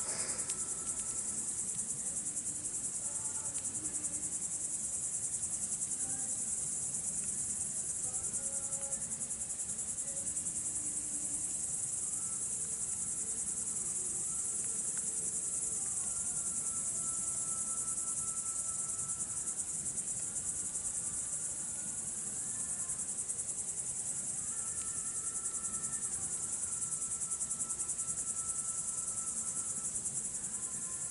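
A steady, dense chorus of crickets chirping, high-pitched and unbroken. Faint held lower tones come and go underneath it, stepping in pitch.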